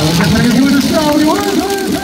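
A man's voice over the stadium loudspeakers, calling out in long, drawn-out tones that start suddenly and slide upward, over the steady noise of a large baseball crowd.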